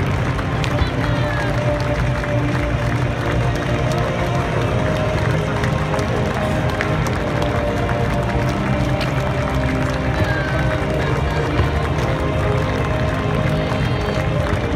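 Music playing over a stadium public-address system, with the steady noise of a large crowd talking beneath it.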